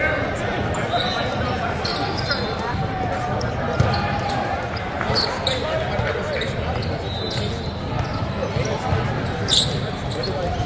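Basketball bouncing on a hardwood court amid the echoing voices and chatter of a large gym hall, with a few short high squeaks.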